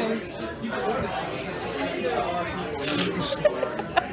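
Indistinct chatter: several people talking at once, with no clear words. A couple of short knocks come near the end.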